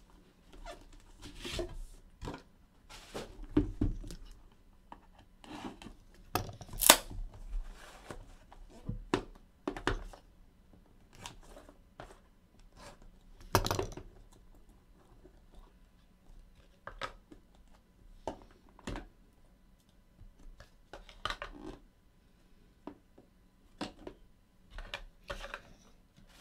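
A trading-card box and the pack inside being handled and opened by hand: scattered rustling, tearing and handling clicks, with a few sharper snaps about seven and fourteen seconds in.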